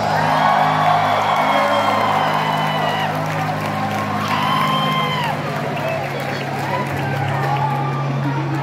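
Concert crowd cheering and shouting with whoops after a rock song ends, over a steady low hum from the stage.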